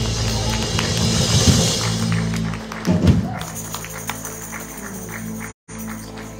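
Live worship band music: a held keyboard chord under drums and cymbals, which fade out about halfway through, leaving the sustained chord with a short vocal phrase and light taps. The audio cuts out for a moment near the end.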